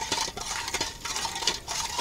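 Steel ladle stirring water in a stainless steel pot, scraping and clinking lightly against the pot, with a few short clicks: sugar being mixed into water to make syrup for feeding bees.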